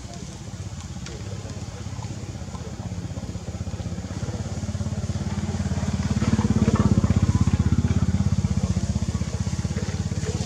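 A motor vehicle's engine running with a fast, even pulse, growing louder to a peak about seven seconds in, then easing off slightly.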